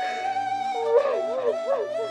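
Sad drama score with a held woodwind note. About a second in, a woman's crying wail rises and falls over it in several sobbing waves.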